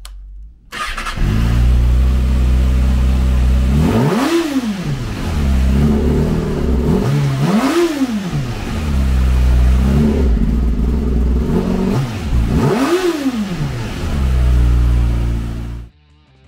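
A 2023 Kawasaki Ninja ZX-6R's 636 cc inline-four is started on the button and catches about a second in. It then idles and is revved three times, each rev rising quickly and falling back to idle.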